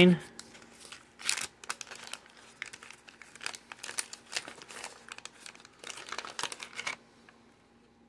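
Waxed-paper wrapper of a 1989 Topps baseball card pack crinkling and tearing as it is peeled open by hand, in irregular crackles that stop about seven seconds in.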